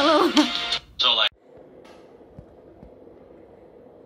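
A voice with music from a video playing on a tablet, cut off sharply about a second in. After that only low room tone with a faint steady hum.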